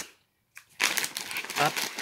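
Plastic snack packaging crinkling and crackling as it is handled, for just under a second.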